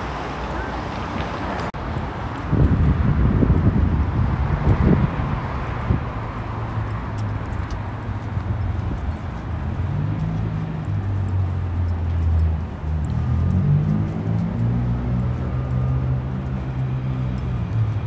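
City street ambience with traffic, a louder low rumble a few seconds in, and low-pitched music notes that hold and shift in steps through the second half.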